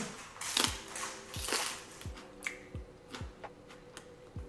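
Close-up chewing of a mouthful of raw water spinach with rice, giving crisp crunches now and then. Under it runs soft background music with a low drum beat.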